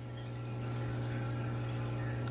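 A steady low hum under a faint even hiss: room tone, with no distinct event.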